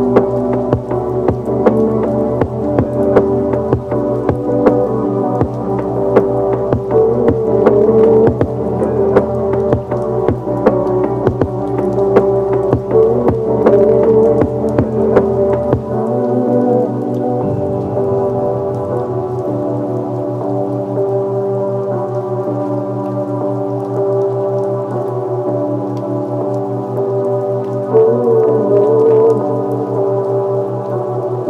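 Ambient music of long sustained tones layered over a steady rain patter. A deep bass part underneath drops out about halfway through, leaving the higher tones and the rain.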